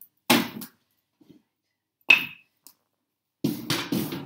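Wood and metal knocks from tending a dying fire in a fireplace: a heavy knock about a third of a second in, a sharp metallic clink with a short ring about two seconds in, then a quick run of clattering knocks near the end.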